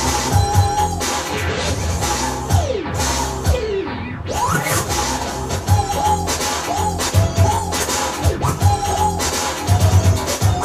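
Turntablist routine played on vinyl turntables: a drum beat cut up with scratched, pitch-bent samples. About three seconds in, the sound sweeps down in pitch and the treble drops away. It then rises back and the beat resumes.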